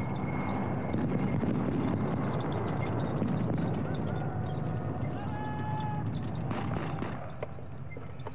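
Military armoured vehicle under way, its engine running hard in a dense, steady low noise that eases a little near the end.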